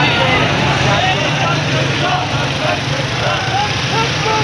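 A crowd of marchers' voices mingling, with no single voice standing out, over the steady running of motorcycle engines.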